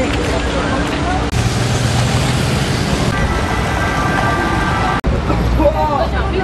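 Busy city street ambience: road traffic running and passers-by talking, in short clips that cut abruptly from one to the next. A steady high tone sounds for about two seconds in the middle.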